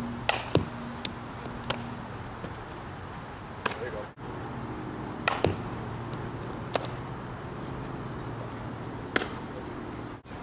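About eight sharp knocks or cracks, irregularly spaced, over a steady background with a low hum. A short dropout about four seconds in breaks the background.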